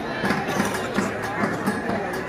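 Music over a crowd's voices, with a rapid crackle of firecrackers.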